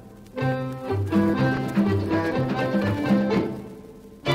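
Instrumental opening of a candombe played by an orquesta típica, with bowed strings and bass in a rhythmic phrase. It starts just after a brief lull and tapers off near the end.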